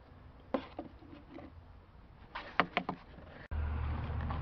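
Light knocks and clicks of hand tools and parts being handled on the A/C expansion valve fittings, a few scattered, then a quick cluster of sharper knocks a little past halfway. A steady low hum starts abruptly near the end.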